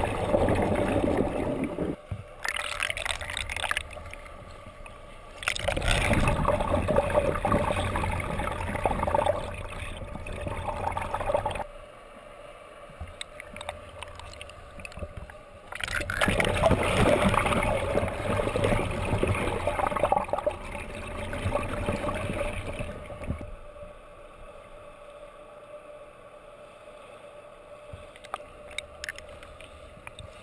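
Water churning and bubbling around a swimmer as heard from underwater, in several long louder stretches during strokes and wall turns, with quieter stretches between them.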